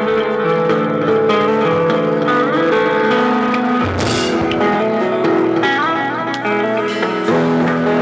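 A band playing live: guitars ring out a melodic line of sustained notes in an instrumental song. There is one sharp crash about halfway through.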